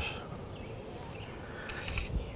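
Quiet outdoor lake ambience: a faint steady hiss with a few faint, high chirps.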